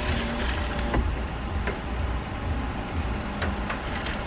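Steady low rumble of a car heard from inside its cabin, with a few faint, sharp clicks scattered through it.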